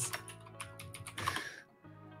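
Typing on a computer keyboard: a quick run of key clicks that thins out toward the end, as a short terminal command is typed and entered.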